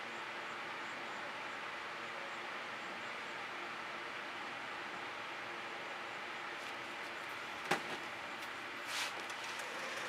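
Steady background hum and hiss, with one sharp click about three-quarters of the way through and a soft brief rustle near the end.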